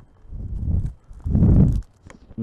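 Two dull, muffled bumps of handling noise while small plastic toy pieces and their bags are handled on a table, the second one louder.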